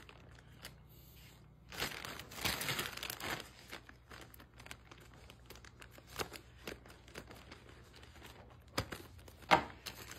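Thin plastic frozen-food bag crinkling and rustling as scissors cut a notch into its top, with small snips and clicks. The rustling is densest about two seconds in, with a few sharper crackles near the end as the cut plastic is handled.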